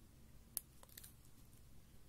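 Near silence with a faint low hum, broken by one short click about half a second in and a couple of fainter ticks after it, from a thumb tapping and handling a smartphone's glass screen.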